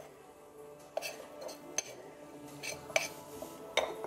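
A small metal spoon clinking a handful of times against a dish as water is worked into flour for a dough, over faint background music.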